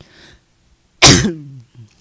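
A man coughs once, a sudden loud burst about a second in with a short voiced tail falling in pitch, after a faint breath in.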